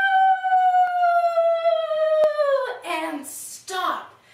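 A woman's voice holding one long, wind-like "whooo" that slides slowly down in pitch and stops a little over halfway through, with a single click about two seconds in. After it comes a breathy whoosh and a short vocal sound near the end.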